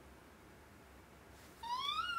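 A woman's high-pitched imitation of a crying cat: one wailing meow-like call that rises and then falls, starting near the end.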